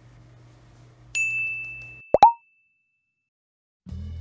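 A bright chime-like ding sound effect about a second in rings and fades, followed about a second later by a quick double 'plop' pop effect that drops in pitch. Then there is a short silence, and background music starts just before the end.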